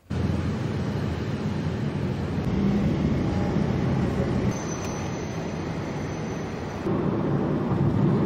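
Steady road and engine rumble of a moving car, heard from inside the cabin, with a faint thin high whine through the middle.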